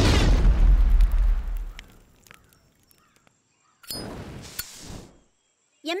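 Cartoon explosion sound effect: a loud boom with a deep rumble that dies away over about two seconds. A second, quieter rush of noise follows about four seconds in, lasting about a second.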